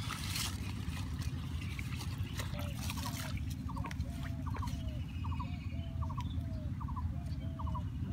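A bird calling over and over, each call a quick triple note followed by a lower bent note, repeating a little more than once a second from about three seconds in. Dry water hyacinth leaves crackle under footsteps and handling during the first three seconds, over a steady low rumble.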